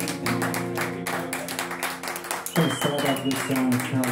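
Acoustic guitar strummed in a steady rhythm together with an electric guitar, playing a song's intro. A thin high tone sounds for about a second, about two and a half seconds in.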